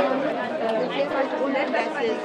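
Several people talking at once in casual, overlapping conversation.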